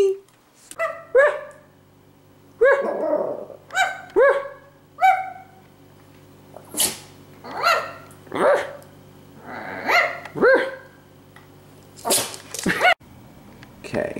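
A small long-haired Chihuahua barking, about fifteen short barks, one or two at a time, each dropping in pitch, with a steady low hum underneath.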